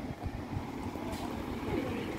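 Outdoor street ambience while walking: a steady low rumble with faint distant voices.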